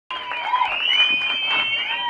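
Audience cheering, with many high voices overlapping.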